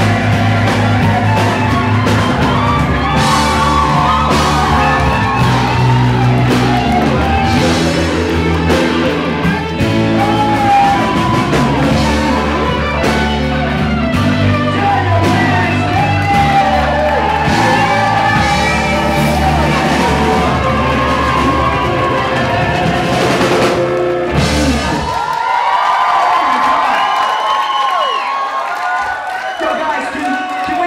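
Live blues band with a horn section, electric guitar, piano and drums playing the song's final bars, stopping about 25 seconds in. The audience then cheers and whoops.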